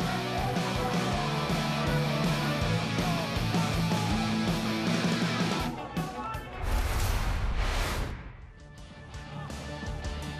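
Background rock music with guitar, steady for about six seconds, then broken by a short loud noisy swell around seven seconds in before it drops quieter.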